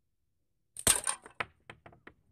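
A slingshot being shot: one sharp crack just under a second in, followed by four lighter clicks in quick succession.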